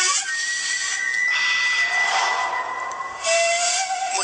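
A TV ad soundtrack: a long, steady whistling tone over a hiss, giving way about three seconds in to a lower held tone that rises slightly.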